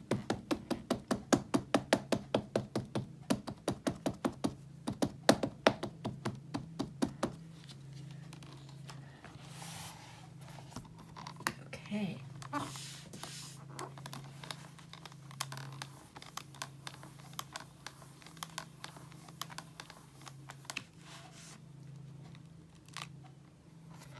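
Quick run of light taps, about four to five a second, for the first seven seconds or so: an ink pad being dabbed onto a clear stamp. After that come scattered softer knocks and rubs as the stamp is pressed down by hand.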